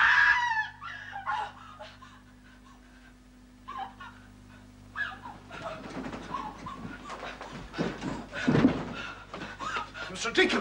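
A woman's scream, the loudest sound, cutting off just after the start, then a quiet stretch with a steady low hum. From about halfway comes irregular hurried movement and breathing on a staircase as she flees a rat.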